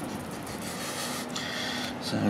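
Wet sandy slurry sliding out of a sack into a plastic bucket, a steady sloppy pouring noise, with a faint steady hum underneath.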